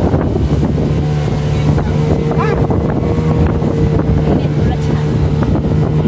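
Motorboat engine running steadily with the boat under way, its even drone joined by wind buffeting the microphone.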